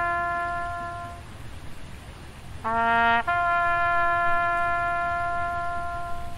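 Solo trumpet playing a slow call in long held notes. A held note fades out about a second in, and after a short gap a brief lower note leads straight into another long held note that fades near the end.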